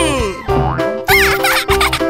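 Playful children's cartoon music over a pulsing bass beat, with sliding-pitch cartoon sound effects: a falling glide at the start and a quick rise-and-fall boing-like glide about a second in.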